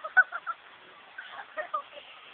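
A person laughing in short bursts, in two quick runs of three or four.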